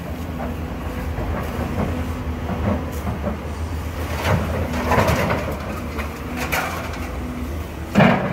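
Heavy demolition machinery's diesel engine running steadily, with several crashes and cracks of breaking building debris, the loudest near the end.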